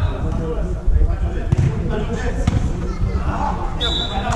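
Players' shouted calls during an indoor small-sided football match, over repeated thuds of running feet and the ball on artificial turf, with a few sharper knocks about one, one and a half and two and a half seconds in.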